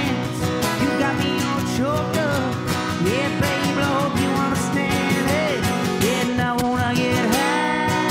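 Live acoustic guitar strummed steadily, with a wordless melody sliding and wavering up and down over it. A long held high note comes in near the end.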